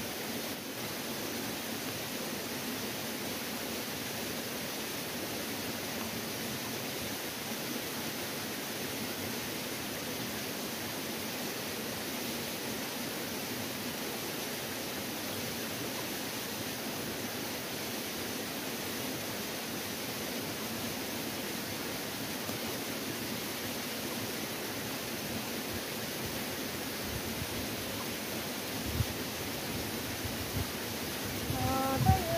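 A steady, even rushing hiss that does not change, with one short, soft low thump near the end.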